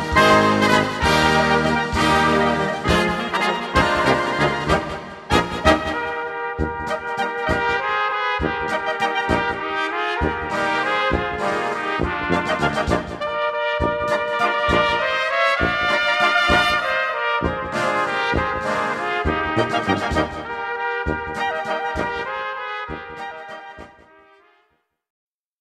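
Instrumental folk brass band music led by trumpets and trombones over a steady beat, fading out near the end.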